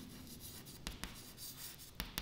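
Chalk writing on a chalkboard: faint scratching, with a couple of sharp taps of the chalk on the board about a second in.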